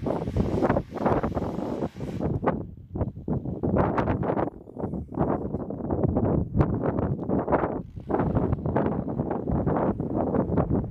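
Wind buffeting the microphone in irregular gusts. The V6 of a 2003 Ford Escape can be heard faintly underneath as the SUV works its way up a snowy slope.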